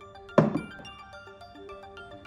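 A single thunk about half a second in as a small gas pressure regulator is set down on a workbench, over background music.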